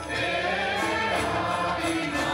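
A group of voices singing a devotional song with instrumental accompaniment and light percussion keeping a regular beat.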